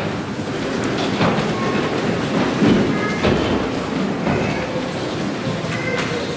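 Congregation moving in the pews: a steady rumble of shuffling and rustling, broken by several sharp knocks and thuds.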